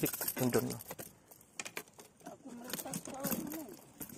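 A man's voice: a short low utterance at the start, then faint murmuring, with a few short sharp clicks in between.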